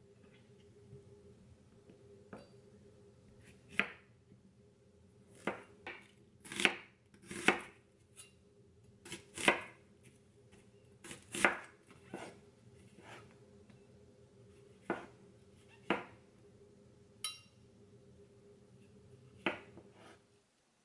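Chef's knife chopping zucchini and onion on a bamboo cutting board: irregular sharp knocks of the blade meeting the board, the loudest in a quick run in the middle. A faint steady hum runs underneath.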